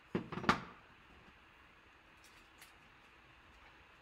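A leaf craft cutout set down on a cutting mat after being flipped over: a short clatter of a few taps within the first half second, the last one the sharpest, then only faint handling ticks.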